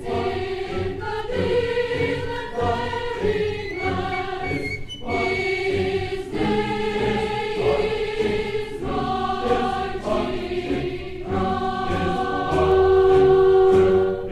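College choir singing sacred music in held chords, from a live 1967 concert recording transferred from vinyl LP; the loudest sustained chord comes near the end.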